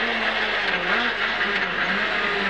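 Renault Clio S1600 rally car's 1.6-litre four-cylinder engine, heard from inside the cabin at speed, with road noise. Its pitch sags, rises briefly about a second in, then drops again as the car slows for a hairpin.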